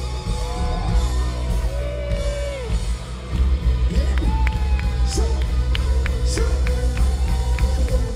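Rock band playing live and loud, with heavy bass and drums, and voices singing and calling out in long rising and falling lines over the music.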